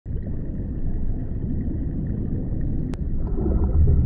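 Low, steady underwater rumble with gurgling water, a water-ambience sound effect, growing a little stronger near the end; a single short click just before three seconds in.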